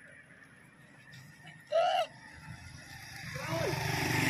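A brief loud vocal call about halfway through, then the low rumble of a vehicle approaching on the road, growing steadily louder near the end.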